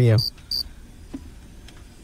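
Cricket-chirp sound effect: a few short, evenly spaced high chirps, about three a second, stopping just over half a second in, then low studio hiss. It is the radio gag for an awkward silence, played when there is no answer.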